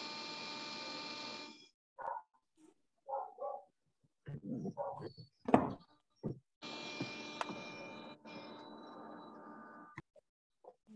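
Faint hiss and hum from an open microphone on a video call, cutting in and out abruptly. While it is off there are scattered short knocks and brief sounds, with one sharp click about five and a half seconds in.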